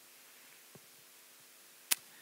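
Faint room tone with a low steady hum, broken by one sharp click near the end.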